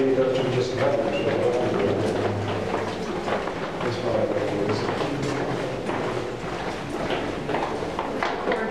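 Indistinct talk of several people walking through a stone tunnel, with scattered footsteps.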